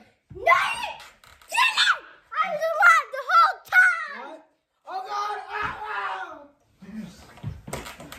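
Young voices yelling and screaming in wordless, high-pitched bursts, with a few sharp knocks near the end.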